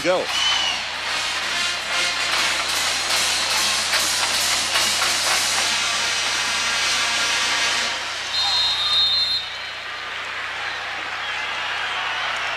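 Football stadium crowd noise with music mixed in. A whistle blows briefly about eight and a half seconds in, and after it the crowd noise drops a little.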